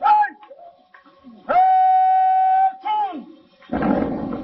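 A voice calling out: a short shout at the start, then one long call held on a steady high pitch for over a second, followed by another shorter call that falls away.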